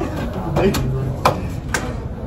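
Three sharp knocks, one early and two about half a second apart near the end, over hushed voices and stifled laughter.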